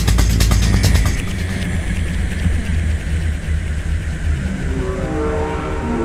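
Psytrance track going into a breakdown: the kick and hi-hats drop out about a second in, leaving a rumbling bass drone under a falling noise sweep, then a rising synth line starts to build near the end.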